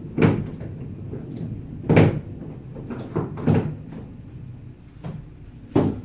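About five sharp clunks and knocks, the loudest about two seconds in, as a black accessory mount is worked and locked in place in a kayak's accessory rail track, with quieter handling noise between.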